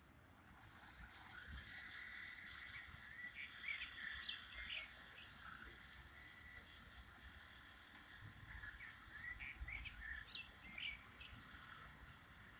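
Faint birdsong: short chirps and quick whistled notes in two bouts, the first about a second in and the second from about eight seconds in, over a low background rumble.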